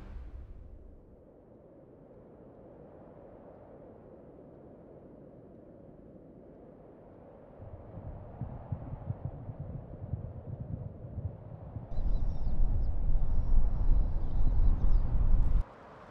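Wind buffeting the microphone in uneven low rumbling gusts over open grassland, faint at first, swelling about seven seconds in and much louder from about twelve seconds until it cuts off suddenly near the end. A few faint high tones sound over the loudest part.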